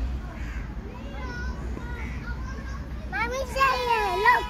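Faint voices and children playing, then a young child's high voice calling out for about a second near the end, over a steady low rumble.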